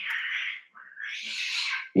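Two cats fighting, a harsh hissing yowl in two stretches with a short break about half a second in.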